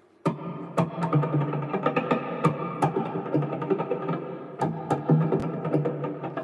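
Offset-body electric guitar played through an amp: a busy run of picked notes and chords that starts suddenly about a quarter second in.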